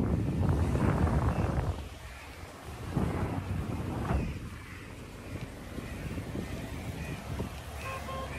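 Wind buffeting the microphone, a low rushing rumble that is heavy for the first two seconds and then eases to a lighter, steady rush.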